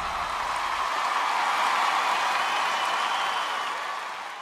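Audience applauding and cheering as a steady wash of noise that fades out at the end. The low bass of the closing music dies away about a second in.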